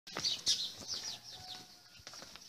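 Small birds chirping: a quick flurry of short, high, falling chirps in the first second, thinning out toward the end.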